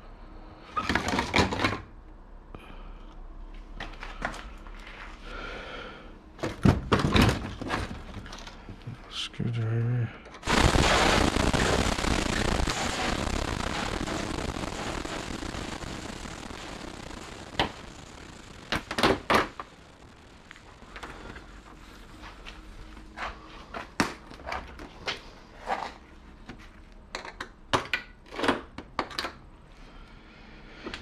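Parts of a flat-screen TV being handled and set down during a teardown, with scattered knocks and clicks. About ten seconds in, a loud rushing noise starts abruptly and fades away slowly over several seconds.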